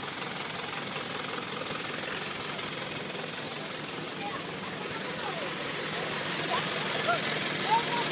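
Isuzu Elf truck engine idling steadily, with faint voices of people around it, which grow a little louder near the end.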